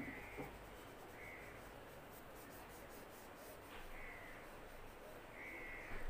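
Four short bird calls spaced a second or more apart, faint over a steady background hiss.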